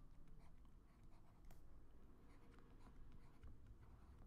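Faint, irregular scratching and light taps of a pen or stylus writing by hand, barely above room tone.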